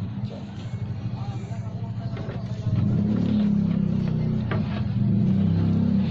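A motor vehicle engine runs steadily close by and gets louder about halfway through, as if revved or passing closer.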